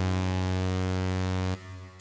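A Zebra HZ software synthesizer playing one held low note, bright with many overtones, through its Rev1 reverb in MetalVerb mode. The note cuts off about one and a half seconds in, leaving a short, faint reverb tail.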